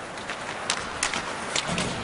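Ice hockey arena ambience: a steady crowd murmur, with three sharp clacks of sticks and puck on the ice.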